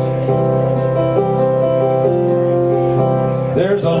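Digital stage keyboard playing a slow introduction of sustained piano chords. A man's singing voice comes in right at the end.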